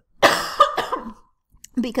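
A person coughs once, a short, harsh burst of under a second, and then begins speaking near the end.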